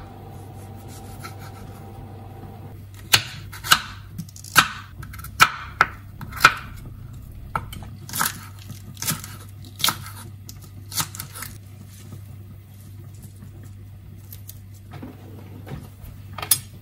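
Kitchen knife cutting through a tomato and spring onions onto a wooden cutting board: a series of about a dozen sharp, uneven knocks of the blade on the board from about three seconds in, thinning out near the end. A steady low hum runs underneath.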